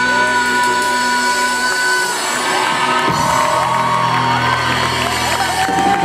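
Live rock band of electric guitar, drums and vocals playing, with a long held high note for about the first two seconds. From about three seconds in, the audience cheers and whoops over the music.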